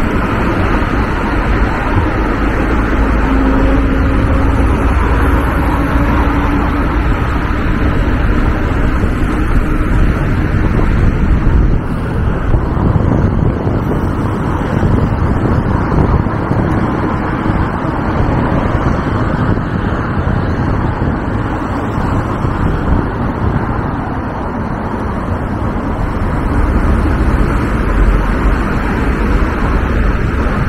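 Steady rushing wind on the microphone of a camera riding on a moving bicycle, mixed with the running of car traffic on a busy multi-lane road.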